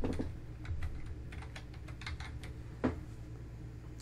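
Typing on a computer keyboard: a quick run of key clicks, with one louder click a little before three seconds in.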